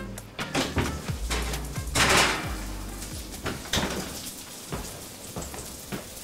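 Kitchen handling sounds over background music: an oven door opened and a metal baking sheet of roasted broccoli taken out, with scattered knocks and clatters and a louder rushing burst about two seconds in.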